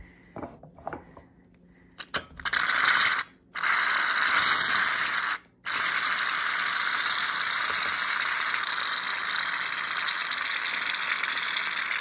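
Aerosol cans of shaving cream spraying foam into a jar: a steady hiss in three long spells, starting about two and a half seconds in, with two short breaks. A few light clicks come before it.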